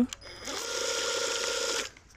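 Gloria MultiJet 18V cordless medium-pressure cleaner running on its lowest setting with the fan-spray nozzle: the battery-driven pump whirs steadily with a hiss over it for about a second and a half, starting shortly in and cutting off just before the end.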